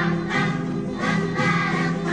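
Background music with a choir singing sustained phrases.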